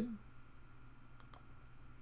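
Two quick computer mouse clicks a little past halfway, over quiet room tone.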